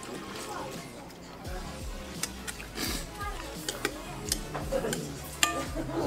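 Utensils clinking and scraping against large glass bowls of noodles, with several sharp clinks, the loudest near the end. Music plays in the background.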